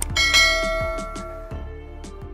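A bright bell-like chime strikes about a quarter second in and rings on, slowly fading. It sounds over background music with a steady beat.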